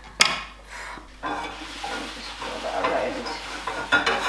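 A sharp knock about a quarter second in, then a hot frying pan sizzling steadily on the hob.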